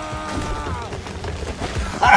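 Film battle soundtrack: a man's long held war cry ends about a second in, over music. Low rumbling battle noise with scattered thumps follows.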